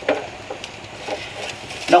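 Silicone spatula stirring and scraping soft scrambled eggs around a stainless steel saucepan, with a soft sizzle from the pan on the gas flame.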